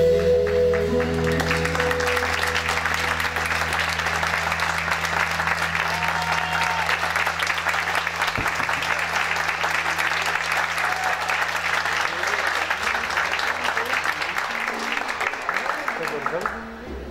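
The band's final chord rings out and fades over the first second or two, then a theatre audience applauds steadily with a few shouts. The clapping dies away near the end.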